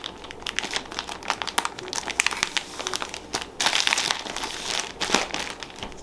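Plastic zip-top bag crinkling and rustling in irregular bursts as a paper-towel-wrapped roll is pushed into it and handled, busiest a little past the middle.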